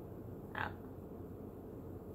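A woman's short "ah" about half a second in, over a low steady room hum.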